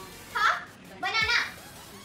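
A girl's raised, high-pitched voice, two short calls about half a second and a second and a quarter in.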